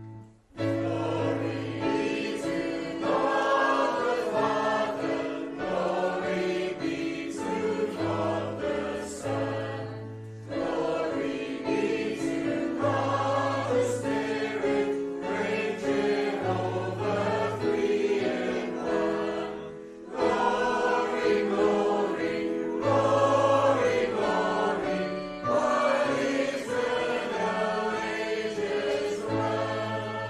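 A congregation singing a hymn together over an instrumental accompaniment with sustained bass notes, with brief breaks between phrases about ten and twenty seconds in.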